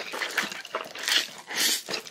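A man slurping spicy instant noodles off chopsticks: two longer hissing slurps, about a second in and again just after a second and a half, with short wet smacks of chewing in between.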